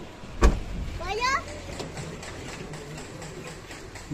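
A car door shutting with a single thump about half a second in, followed by a brief high-pitched voice and a low steady rumble.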